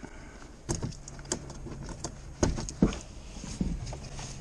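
Plastic clicks and knocks from handling a Mercedes Sprinter's door trim panel and working its clips and fittings loose, a scattered string of short sharp sounds with the two loudest about two and a half seconds in.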